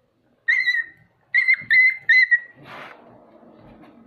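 Dog yelping in pain as the needle goes into its hind leg: four sharp, high-pitched cries in quick succession, then a shorter, rougher cry and quieter, lower whining.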